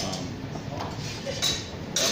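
Steel longswords clashing in sparring: a few sharp metallic clacks, the loudest about a second and a half in with a brief ring.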